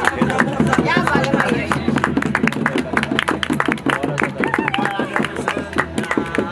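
A group of people clapping a steady beat, about three claps a second, while voices sing and call over it.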